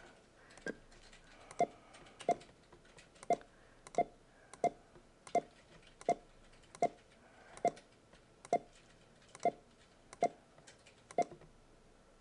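Computer mouse button clicking: about fifteen single sharp clicks, roughly one every 0.7 seconds, each one placing a point.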